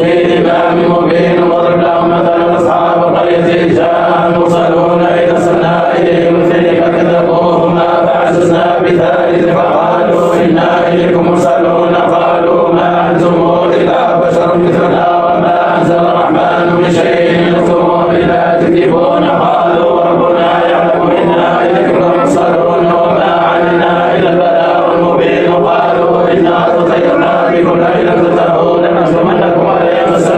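Sufi samāʿ devotional chanting by male voices, a continuous, sustained chant at an even level with no breaks.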